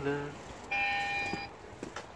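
Video doorbell button pressed, giving one steady electronic tone of several pitches at once, lasting under a second and cutting off cleanly.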